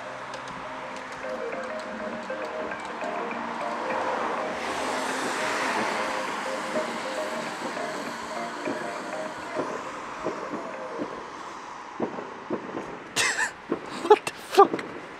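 Music playing from a laptop inside a backpack, a melody of held notes, though the laptop's lid is closed. A rushing noise swells up and fades away in the middle.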